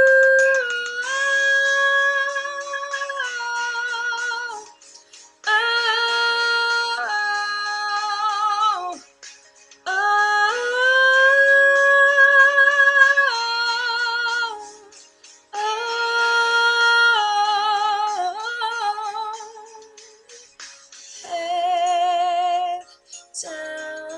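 A woman singing alone, unaccompanied, holding long notes with vibrato in phrases of a few seconds separated by short pauses for breath.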